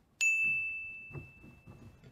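A single bright bell ding, an added sound effect struck once and ringing on one steady tone as it fades over about two seconds.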